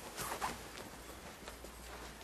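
Faint rustling and brushing, with a few soft handling sounds in the first half second.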